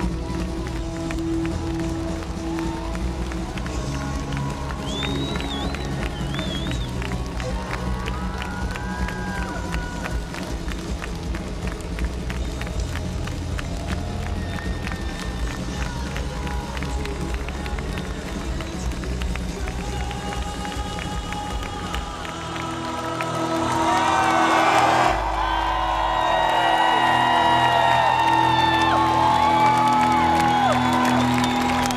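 Live rock band playing through a festival PA, recorded from within the crowd, with a steady beat and heavy bass. About two-thirds of the way in the bass and beat drop away as the song winds down, and the crowd cheers and whoops loudly over the remaining music.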